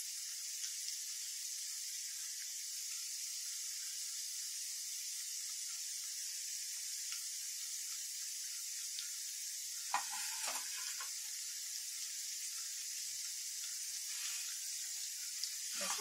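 Corn-flour nacho triangles deep-frying in hot oil in a kadai: a steady, even high sizzle. A brief voice sound cuts in about ten seconds in.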